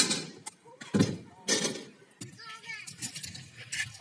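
Sharp knocks and short rolling noise from a stunt scooter's wheels and deck on skatepark concrete: a knock at the start, a louder one about a second in, and another rush of noise just after. A child's voice calls out briefly in the middle.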